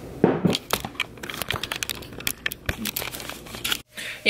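Grocery packaging being handled, crinkling and rustling in a run of irregular crackles that cuts off suddenly near the end.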